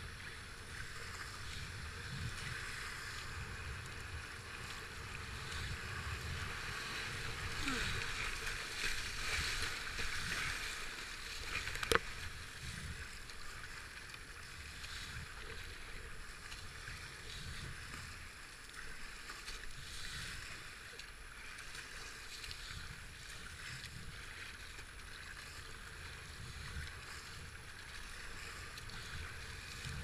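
Rushing white water of a river rapid, swelling for a few seconds before easing, with an uneven low rumble throughout. A single sharp knock about twelve seconds in.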